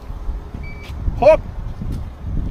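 A short, high electronic beep from the car about half a second in, as the hands-free tailgate responds to a foot swipe under the rear bumper. A low rumble runs underneath.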